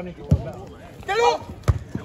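A football being struck on the pitch: a dull thud about a third of a second in and a sharper smack near the end, with a brief shout between them.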